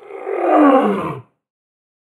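A single big-cat-style roar, falling in pitch over about a second and then cutting off abruptly into silence.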